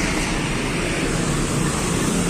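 Steady traffic noise on a busy street: engines of passing vehicles, with no single event standing out.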